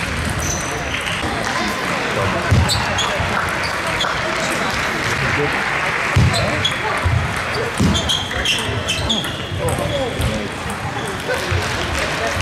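Table tennis rally: the ball clicking sharply off bats and table, several hits at an uneven pace, over a steady murmur of voices from the hall.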